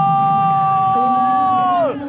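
A football commentator's long drawn-out goal shout, held on one high pitch and falling away near the end, over stadium crowd noise.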